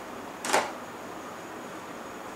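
A single short clink about half a second in as a small saucepan is picked up and handled; otherwise faint room noise.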